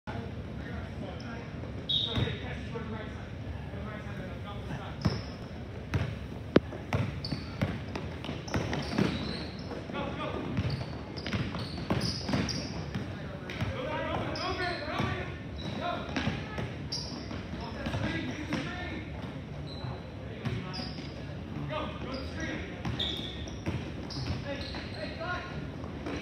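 Basketball dribbled and bouncing on a hardwood court in a large gym, a scattering of sharp thuds, over a background of players' and spectators' voices.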